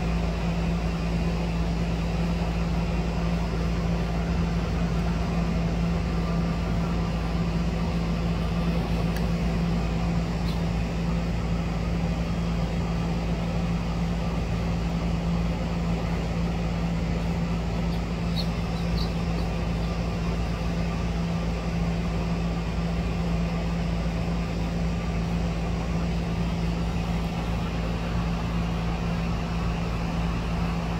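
A steady mechanical hum with a constant low drone that does not change at all. A few faint, short high chirps come through about ten seconds in and again near nineteen seconds.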